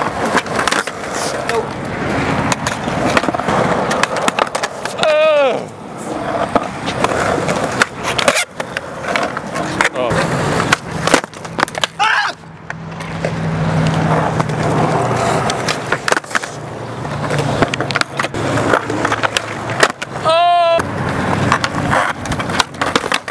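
Skateboard on concrete: wheels rolling, with repeated sharp clacks of the tail popping and the board landing as flatground tricks are tried. Two short yells, about five seconds in and near the end.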